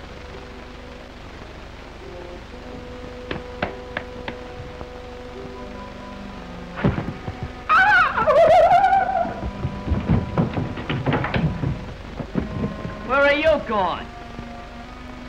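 Old film soundtrack: soft held music notes with a few sharp clicks, then a loud wavering cry about eight seconds in. A flurry of thumps and knocks follows, and a short vocal comes near the end.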